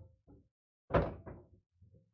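A pocketed pool ball drops into a Valley coin-op bar table's internal ball return and lands with a sudden hollow thunk about a second in, followed by a few smaller knocks as it settles.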